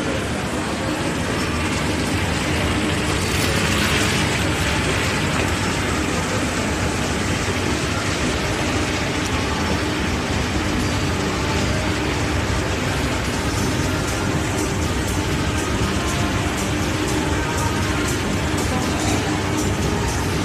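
Steady mechanical running with a fast stream of small clicks that grows more distinct in the second half: an escalator's drive and step chain, heard while approaching its top landing.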